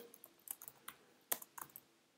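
Computer keyboard being typed on: a handful of separate faint keystrokes, the loudest about two-thirds of the way through.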